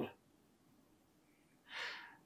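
A man's short, audible intake of breath near the end, after a pause in his speech.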